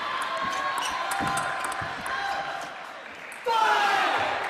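Table tennis ball being struck back and forth in a rally, a series of sharp clicks off the bats and table over a murmur of voices in the hall. The rally ends, and about three and a half seconds in a loud voice breaks out as the point is won.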